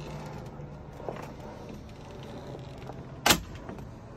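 A boat's fibreglass console cabin door being shut, one sharp knock a little over three seconds in, over a faint low steady hum.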